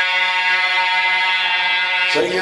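A man's voice holding one long, steady sung note in a recitation chant.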